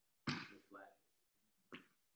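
A man's voice saying a few short, quiet words in two brief bursts, with pauses between.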